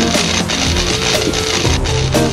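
Loud heavy rock music with electric guitar and drums.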